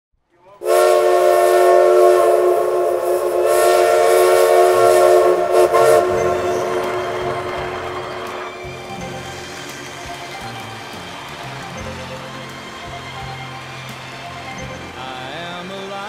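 A multi-note train horn sounds one long blast of about five seconds, with one brief break in the middle, then dies away. Music with a low bass line then comes in and carries on.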